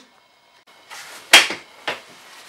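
Pram carrycot being unlatched and lifted off its chassis: a soft rustle, then a loud sharp click of the release catch a little past halfway and a quieter click near the end.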